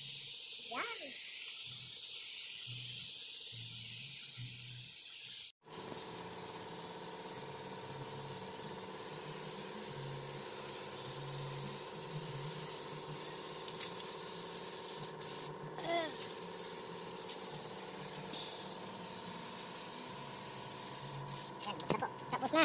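Gravity-feed paint spray gun spraying paint onto a van's body panels: a steady hiss of compressed air and paint mist, with two brief breaks, about five and fifteen seconds in.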